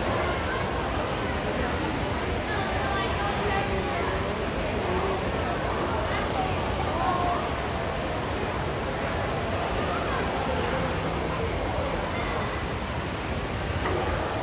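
Steady background noise of a large indoor space, with indistinct voices in the distance.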